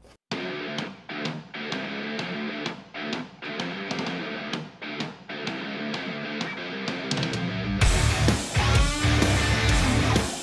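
Guitar-based background music: a lighter section with a steady tick about twice a second, then a fuller, louder band section with heavy bass about eight seconds in.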